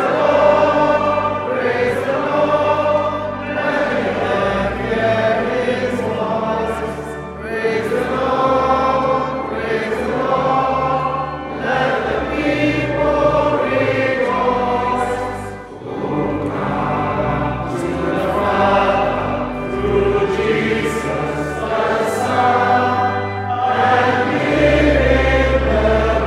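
Church congregation singing a hymn together in many voices, over low sustained accompanying notes that change with the chords.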